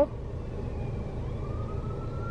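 Steady low rumble inside a parked car with its engine running. A faint siren wails, its pitch rising slowly through the second half.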